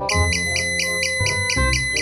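Arduino alarm buzzer sounding a high, rapidly pulsing alarm tone, about six or seven beeps a second over a steady high whine, starting suddenly. Background music with a bass line plays underneath.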